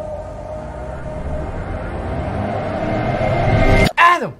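Thriller-trailer sound design: a deep rumbling drone with a steady held tone, swelling louder and louder until it cuts off abruptly at the very end.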